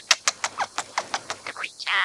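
Scaly-breasted munia singing: a rapid run of short clicking notes, about six or seven a second, with a longer, louder note starting right at the end.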